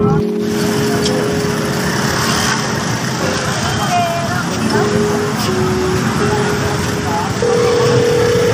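Busy street-market noise: a dense mix of voices and traffic, with held musical tones that step from pitch to pitch and a louder, higher note near the end. A heavy low rumble cuts off about a third of a second in.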